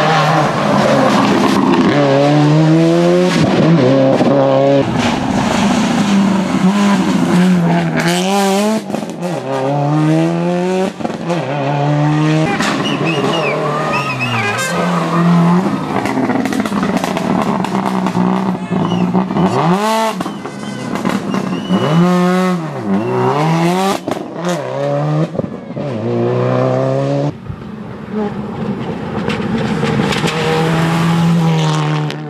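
Subaru Legacy rally car's flat-four engine accelerating hard through the gears, its pitch climbing and dropping back at each shift, with throttle blips on braking as it passes close several times. Tyres squeal briefly around the middle.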